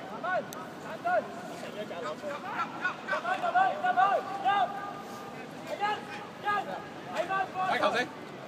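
Voices calling and shouting across a football pitch, too far off to make out words: short rising-and-falling calls from players and people on the touchline over a low open-air background.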